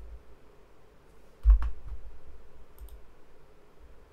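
A heavy low thump with a sharp click about one and a half seconds in, then a couple of light, high clicks near three seconds, over faint room hum: handling noise at a computer desk.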